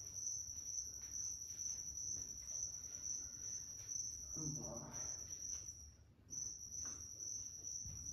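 A steady, high-pitched insect trill that runs without pause except for a brief break about six seconds in. A faint, muffled voice is heard about four and a half seconds in.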